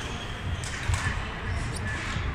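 Busy sports-hall ambience: overlapping voices from the crowd and players, with dull thuds and a cluster of sharp knocks about a second in.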